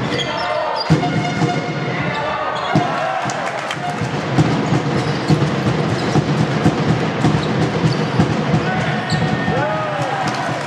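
Live basketball game in a sports hall: a basketball being dribbled on the wooden court, giving many short sharp knocks throughout, with players' shoes squeaking and voices in the hall.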